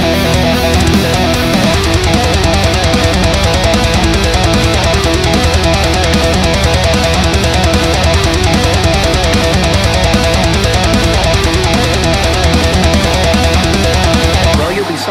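Heavy metal instrumental passage: distorted electric guitars over drums, loud and steady, with the beat turning fast and dense about two seconds in.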